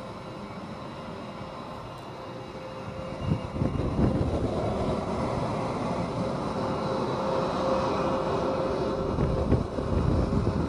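F-22A Raptor's twin Pratt & Whitney F119 turbofans at taxi power: a steady jet whine over rushing noise, growing louder and rougher about three seconds in as the jet passes close.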